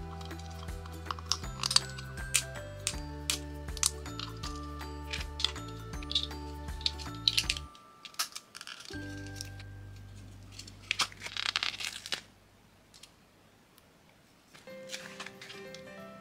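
Background music with sharp clicks of small plastic kit pieces being pressed and snapped together. The music breaks off about eight seconds in. A crinkling rustle follows at around eleven seconds, then near silence before the music returns near the end.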